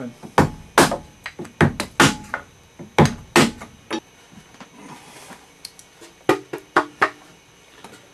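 Rubber mallet striking a chisel to split away soft white cedar: about a dozen sharp, irregular knocks in the first four seconds, then a short run of further knocks after a pause.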